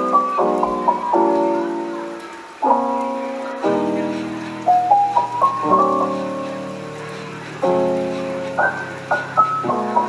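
Background piano music: slow chords and short rising runs of single notes, each note fading away.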